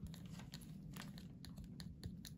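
Faint crinkling and light clicks of a foil lid and small plastic cup being handled with metal tweezers.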